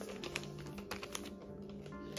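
Soft background music with held notes, overlaid by a scattering of light, sharp clicks and taps.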